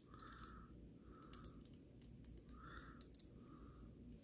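Faint clicks and taps of small plastic Lego pieces being handled while a minifigure is fitted into its seat on a little toy vehicle, with four soft hissy puffs in between.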